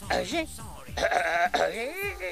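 A man speaking in short phrases, his voice quavering in a bleat-like way for a moment about a second in.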